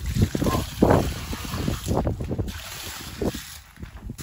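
Water poured from a metal bucket, splashing onto concrete blocks in uneven surges that die away near the end. The dry blocks are being wetted before their holes are filled with concrete.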